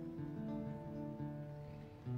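Solo guitar, played through a small amplifier, picking a slow melodic line of held single notes that fade away toward the end.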